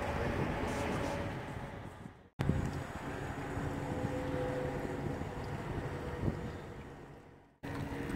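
Wind on the microphone over a steady low engine hum, dropping out to silence twice for a moment, a little over two seconds in and near the end.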